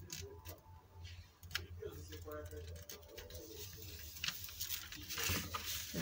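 Brown paper and a clear PVC sheet being handled, folded and lined up by hand: scattered light crinkles and taps, with a short rubbing sound near the end as the fold is pressed. A faint voice murmurs in the middle.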